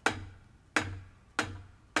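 A wooden drumstick striking a drum practice pad four times at an even, slow pace, each a single clean tap with a dull thud that dies away quickly. These are controlled single strokes in traditional grip: the stick is let go to bounce once off the pad, then caught.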